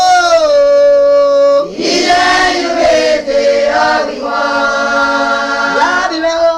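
A group of voices singing a song, holding long notes that glide from one pitch to the next.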